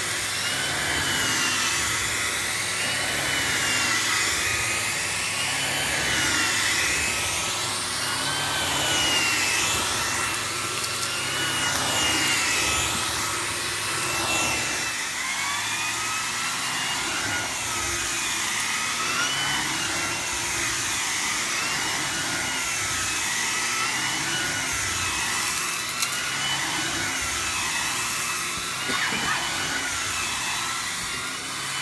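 Miele C3 Complete canister vacuum cleaner running as its floor head is pushed back and forth over carpet: a steady motor whine whose pitch wavers up and down with each stroke. A single sharp click about 26 seconds in.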